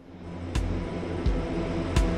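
Music with a slow, steady beat fading in, a low thump about every 0.7 seconds, over a steady drone.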